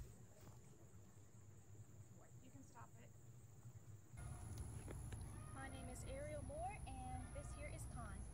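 Faint outdoor background for about four seconds, then a sudden rise in background hiss as a new clip begins, with a faint voice speaking briefly in it.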